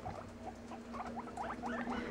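Guinea pigs squeaking: a quick series of short, rising squeaks that comes faster and grows louder toward the end, building into wheeking, typical of guinea pigs calling for food.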